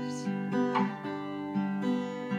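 Acoustic guitar being strummed, the chords changing several times.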